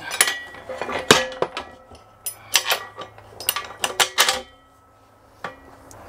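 Small steel hardware clinking and knocking as a J-hook with its washer and lock nut is handled and fitted through a steel tie-down bar: irregular clusters of light metal clicks, the sharpest about a second in.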